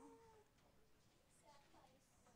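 The end of a woman's drawn-out "oh" fades out within the first half-second, followed by near silence with a few faint, brief sounds.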